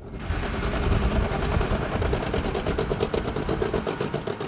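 M1 Abrams tank running, a loud mechanical sound with a rapid, even clatter; it swells up over the first second.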